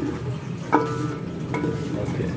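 Wooden spoon stirring chicken curry in an aluminium pot, knocking against the pot twice, about a second apart, each knock leaving a brief metallic ring.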